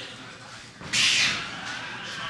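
A single loud, harsh shout bursts out about a second in and fades over about half a second.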